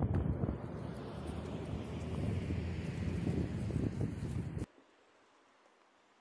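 Wind buffeting the microphone outdoors: a loud, dense low rumble that cuts off abruptly about four and a half seconds in, leaving only a faint hiss.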